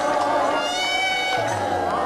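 Kirtan: voices singing long, wavering, gliding notes over music.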